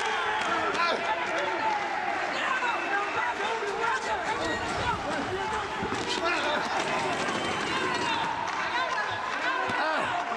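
Several voices shouting and calling out at once around a boxing ring, with scattered thuds and slaps of punches and boxers' feet on the canvas.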